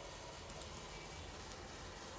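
Faint steady background hiss with a low hum: the microphone's noise floor in a pause of speech, with a couple of very faint clicks about half a second in.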